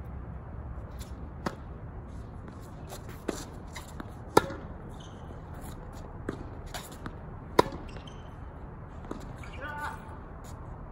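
Tennis ball being struck by racket strings and bouncing on a hard court: sharp single pops spaced a second or more apart, the two loudest about four and a half and seven and a half seconds in.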